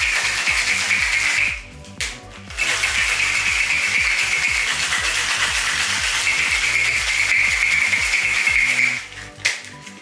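Ice cubes rattling hard inside a metal cocktail shaker tin: the shake with ice that follows the dry shake of an egg-white sour. The shaking breaks off briefly about a second and a half in and stops about a second before the end. Electronic background music with a steady bass runs underneath.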